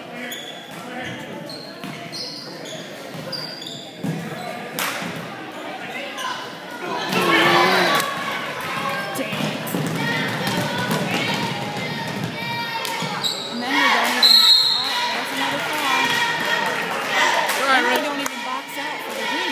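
Basketball bouncing on a hardwood gym floor amid spectators' voices and shouts echoing in a large gym, with a short high whistle late on.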